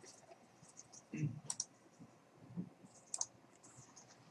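A few faint, sharp computer mouse clicks, about a second and a half apart, as a file is saved and a folder is opened on the computer.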